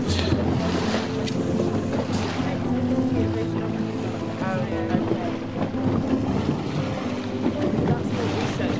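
Boat under way on open water: a steady engine hum beneath wind buffeting the microphone and the wash of water.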